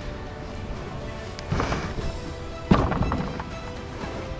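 Background music over two thumps a little over a second apart, the second sharper and louder: a person climbing into a moored open canoe, its hull knocking.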